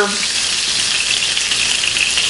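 Venison chop sizzling steadily in hot goose grease in a skillet, just after being turned over.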